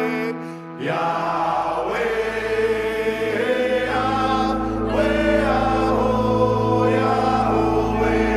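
Music: a held chord breaks off just after the start. About a second in, a group of voices chanting together enters over a steady low drone and carries on.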